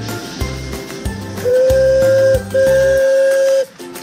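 Steam whistle of a miniature live-steam park-railway locomotive giving two long, steady blasts, the second following right after the first, over background music.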